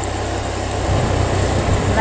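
Low rumble of a moving vehicle with wind noise on the microphone, the rumble growing louder about a second in.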